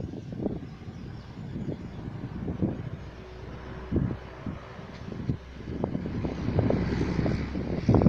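Wind gusting on the microphone in low, irregular buffets, over traffic on a road below. A motor vehicle grows louder over the last few seconds.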